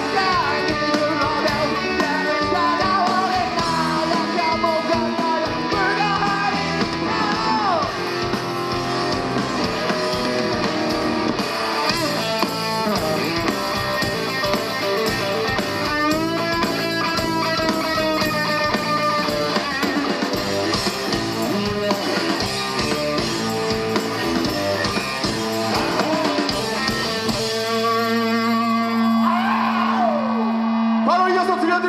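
Live rock band playing, with electric guitars, a drum kit and singing. About two and a half seconds before the end the drums drop out and a single held chord rings on as the song closes.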